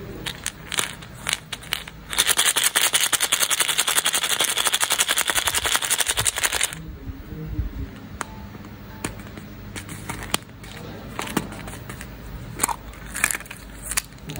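Hollow plastic surprise egg with candy-coated chocolates inside, rattling in a fast, even clatter for about four and a half seconds. Before and after come scattered plastic clicks and taps as the egg is gripped, twisted and pulled open.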